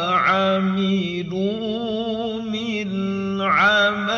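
A man reciting the Quran in melodic tilawah style, drawing out long notes with wavering, melismatic ornaments. The line is broken only briefly near the start and again near the end.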